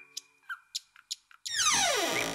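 A few faint clicks, then about one and a half seconds in a loud tone that slides steeply downward in pitch: a comic sound effect in the TV soundtrack.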